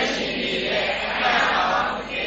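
Voices chanting together in a steady Buddhist recitation.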